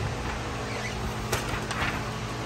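ALM 3222 auto laminator running with a steady hum. A sharp click comes about two-thirds of the way in, followed by a few lighter clicks, as the laminated sheet is cut.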